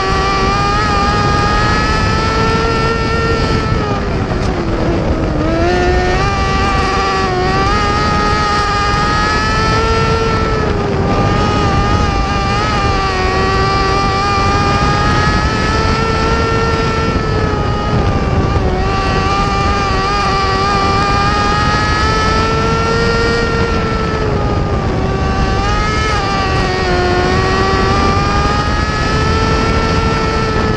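Mini sprint race car engine at racing speed, heard up close on board over a steady rushing noise. Its high pitch swells and drops every few seconds as the car goes on and off the throttle around the dirt oval, with deeper dips twice.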